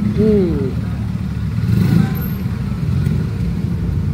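Steady low rumble of road traffic, with a man's short hummed "mm" near the start.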